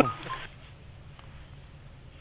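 The end of a laugh, then faint, steady low background noise outdoors.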